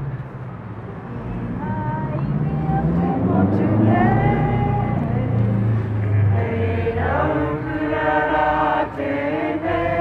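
Unaccompanied group of voices singing a Māori waiata. It begins with a few held notes and swells as more voices join about seven seconds in, over a low steady hum of traffic.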